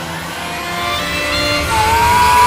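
A car engine revving: the sound grows louder and climbs in pitch, then holds a high rev near the end, over the fading tail of background music.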